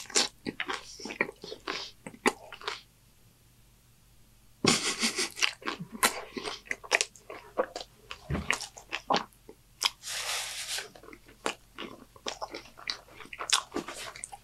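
Close-up biting and chewing of a sauce-soaked homemade taco: wet, crunchy mouth sounds in irregular bursts, with a short quiet pause a few seconds in.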